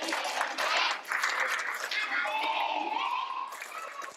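A crowd of children clapping, then many young voices calling out together.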